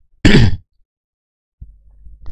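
A man briefly clears his throat about a quarter second in, a single short burst. A faint low rumble starts near the end.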